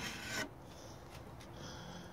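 Wooden pizza peel scraping across a hot pizza stone as a pizza is slid off it, loudest in the first half-second, then a faint rubbing.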